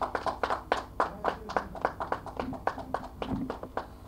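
Scattered applause from a small audience, the separate hand claps distinct, thinning out near the end.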